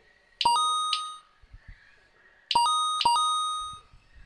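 Electronic lap-timing chimes from the RC race's timing system, each marking a car crossing the timing line to complete a lap. They come in two bursts about two seconds apart, each a few overlapping ding tones that ring out for about a second.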